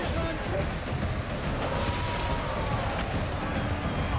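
Water cannon jet spraying, a steady rushing noise with a low rumble, with faint raised voices of a crowd behind it.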